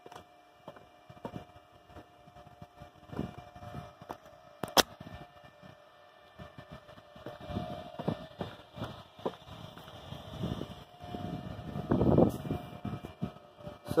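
Footsteps on dry dirt and gravel with rustling from a hand-held camera, growing busier in the second half, with one sharp click about five seconds in. A faint steady whine runs underneath.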